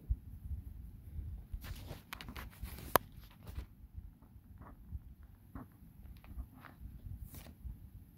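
Handling noise from a camera being repositioned on its tripod: low rubbing and bumping with scattered clicks and scrapes, and one sharp click about three seconds in, the loudest sound.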